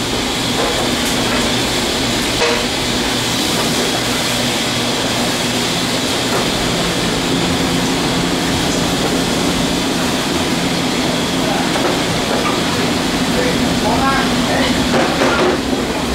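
Steady running noise of commercial kitchen machinery, the exhaust hood fans and conveyor pizza ovens, with a constant hum and no change in level.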